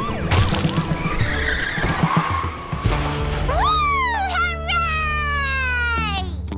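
Cartoon chase sound effects over a music score: a police car skidding and crashing, with noisy hits and breaking glass for the first three seconds, then a long falling whistle.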